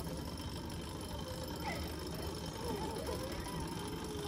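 Faint, indistinct speech over a steady low rumble.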